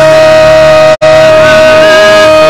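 A man's voice holding one long, very loud sung note ("Oh") into a microphone, with a split-second break about a second in.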